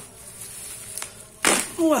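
Black plastic package wrapping handled quietly, then torn open with one short, loud rip about one and a half seconds in.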